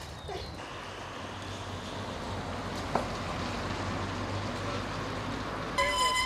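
Steady hiss of tyres on a wet road, swelling slightly, with a small tick about three seconds in and a short high toot starting just before the end.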